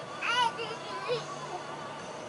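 A baby vocalizing: one short, high-pitched babbling call near the start, then a couple of softer little sounds.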